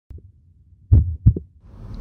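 Heartbeat sound effect: low, dull thumps, a faint pair at first, then a strong beat about a second in followed by a quick double beat.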